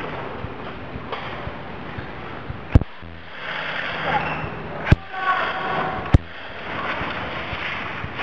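Three sharp airsoft gun shots, about three, five and six seconds in. Distant shouting voices rise and fall between them.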